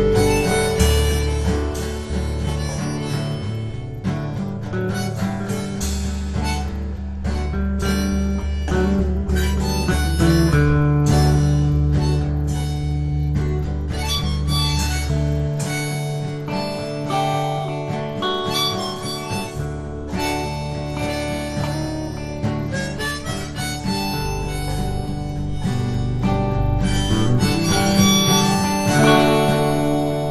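Instrumental passage of a folk-blues song: harmonica playing held and bending notes over rhythmically strummed acoustic guitar and sustained low bass notes.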